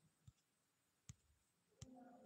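Near silence with three faint clicks spread over the two seconds.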